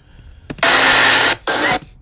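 Loud, even rushing hiss from the street footage's soundtrack. It starts about half a second in, drops out briefly near the middle, returns, and cuts off just before the end.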